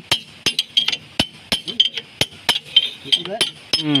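Hammer blows on steel, quick and irregular at about three a second, each a sharp metallic clink with a brief ringing tone: the worn boom pin bushing of a JCB 3DX Super backhoe being knocked out of its bore from the other side.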